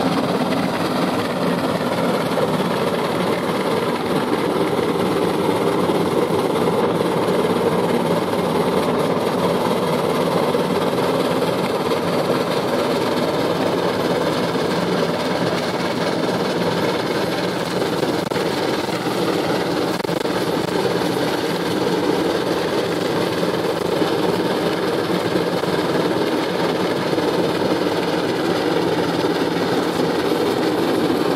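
Steady, loud rumble and rush of running noise, heard from a vehicle travelling at speed alongside a New Zealand Railways Ja-class steam locomotive. The locomotive working under steam is mixed in, with no distinct beat.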